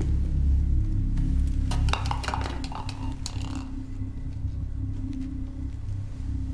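Low, steady drone of a suspense film score, with a short run of light clinks and rattles about two seconds in.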